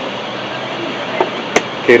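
Two short sharp clicks over a steady low room hum, a faint one about a second in and a louder one just after: a wooden chess piece set down on the board and the chess clock button pressed during a blitz move.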